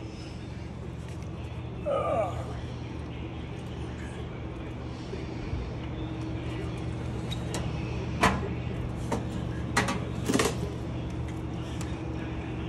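A few sharp metal clunks, about eight to ten and a half seconds in, as a travel trailer's slide-out outdoor grill is pushed back into its compartment. A steady low hum runs underneath.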